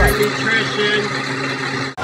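KitchenAid countertop blender's motor running steadily, blending a green drink in its jar; the sound cuts off abruptly near the end.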